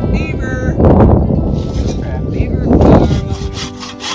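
Long strokes of a Silky Katanaboy 650 folding saw cutting through a dry driftwood log, under a heavy low rumble with loud surges about a second in and near three seconds in. Just before the end the rumble drops away and the saw strokes come through clearer and evenly spaced.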